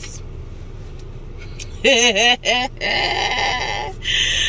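A woman laughing, starting about two seconds in: a short wavering giggle, then a breathy, drawn-out laugh, over the low hum of a car cabin.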